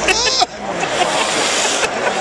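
A man's short strained vocal sound, then about a second and a half of long, noisy breathing as he reacts to the sting of snorted snuff, over stadium crowd babble.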